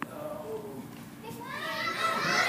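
Several children's voices talking over one another, faint at first and growing louder near the end, with a sharp click at the very start.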